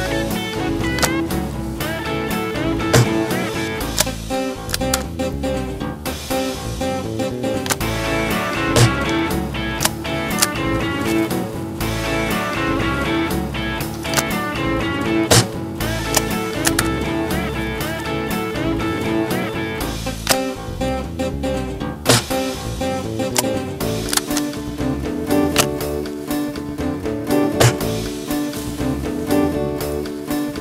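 Background music runs throughout, with about six sharp reports cutting through it every five or six seconds: shots from an Air Venturi Bronco breakbarrel spring-piston air rifle.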